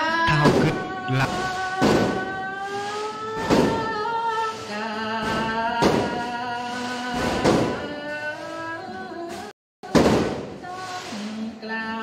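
A Buddhist monk's sermon, recited in a chanted melody of long, wavering held notes. Dull thumps come about every two seconds, and the sound drops out briefly near the end.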